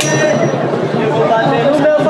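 A single metallic clang at the start, ringing on with a thin high tone for about half a second, over crowd voices and a low pulsing background.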